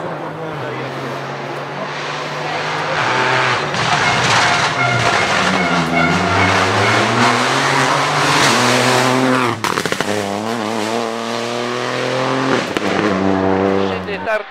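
Peugeot 208 rally car engine at full stage pace, growing louder as the car approaches. The revs fall as it slows, then climb hard as it accelerates. About ten seconds in there is a sharp crack and a brief drop in sound at a gear change, and the revs climb again afterwards.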